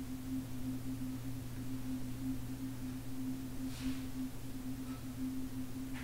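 Ambient film-score drone: a low, steady hum of two held tones, the upper one wavering slightly, with a soft hiss that swells briefly about four seconds in.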